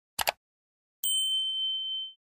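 Subscribe-button animation sound effect: a quick double mouse click, then about a second later a single bright bell-like ding that holds steady for about a second.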